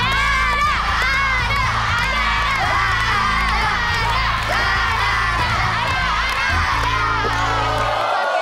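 Children and a studio crowd shouting and cheering together over a game-show music cue with a steady bass. The music cuts off at the very end.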